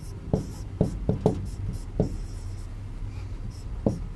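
A stylus writing and drawing on an interactive touchscreen board: a series of short taps as the pen meets the glass, with brief scratchy strokes between them.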